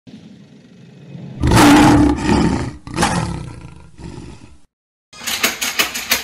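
A loud roar starts about one and a half seconds in, and a second roar follows about a second and a half later, each fading away. After a moment of silence, a quick run of clicks and knocks comes near the end.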